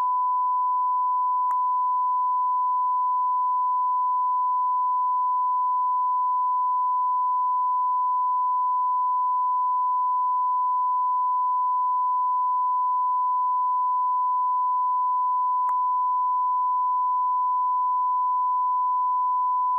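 Steady 1 kHz broadcast line-up test tone, one unbroken pure pitch: the reference tone sent with a feed slate while the network feed carries no programme. Two faint clicks break in, about a second and a half in and near the end.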